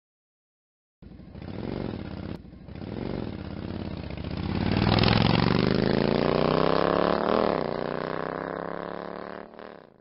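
Motorcycle engine sound effect: it starts about a second in and runs unevenly, then revs up with a steadily rising pitch, drops back, and fades out near the end.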